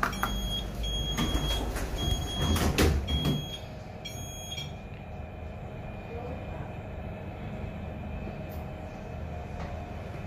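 EM Services–installed Shenyang Brilliant (BLT) passenger lift: the door buzzer beeps four times while the doors slide shut with a clunk about three seconds in. The car then starts upward with a steady low hum.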